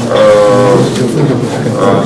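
A man's voice holding a long, level hesitation sound, 'eh', for most of a second, then breaking into short, indistinct speech sounds.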